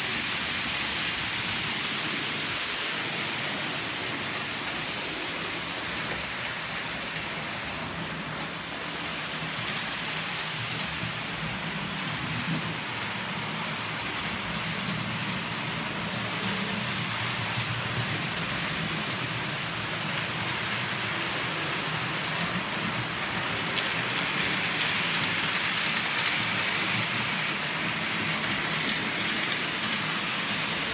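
OO gauge model trains running on the layout: a steady hissing rattle of small wheels on the track over a low motor hum, a little louder near the end.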